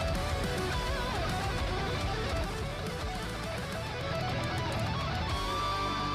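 Background music played on guitar, steady throughout.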